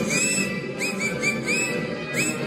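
Marinera music playing, with a run of about six short, upward-sliding whistled notes over it, some clipped and some held a little longer.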